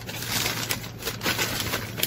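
Clear plastic packaging bag crinkling as it is handled, a dense run of crackles and rustles.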